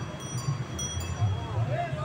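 Bicycle bells on vintage onthel bicycles ringing several times, clear high rings that start at different moments, over nearby voices and a low street rumble.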